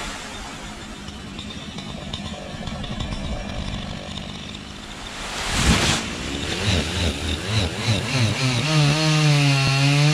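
Chainsaw cutting palm wood: the saw runs low at first, a loud rustling crash comes about five and a half seconds in as the palm's fronds hit the ground, then the saw revs in pulses and holds at high speed near the end.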